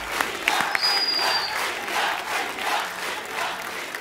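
Large studio audience applauding, a dense, steady clapping.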